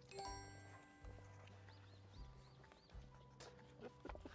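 Faint background music with a repeating low bass line and a few held chime-like notes at the start. About two seconds in come four quick, bouncy electronic blips.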